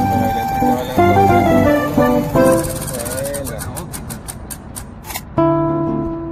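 Background music: held instrumental notes, then a break in the second half filled by a quick even run of ticks, about five a second, before the music comes back in near the end.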